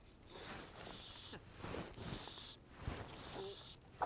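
Faint riverside ambience: quiet water and soft small rustles. Near the end comes a small splash as a hooked fish breaks the surface.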